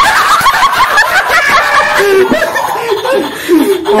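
Several men laughing together, with quick repeated ha-ha bursts in the first half and a few drawn-out laughing voices after.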